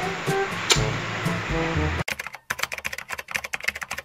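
Background music with a steady beat, cut off about halfway through by a fast run of keyboard-typing clicks, a typing sound effect under a title card.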